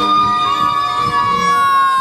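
A person's high-pitched scream held on one long note into a microphone, loud and siren-like, over background music.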